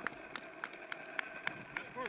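Quick, evenly spaced footsteps of someone running on the field, about three or four a second, with voices calling faintly in the background.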